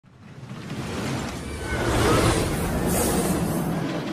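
Intro sound effect: a rumbling rush that swells up from silence, with a whoosh about three seconds in.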